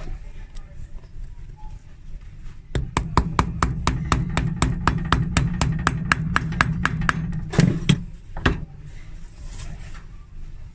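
Small cobbler's hammer tapping rapidly on the pin at the tip of a stiletto heel, about six light taps a second for some four seconds, then two heavier knocks.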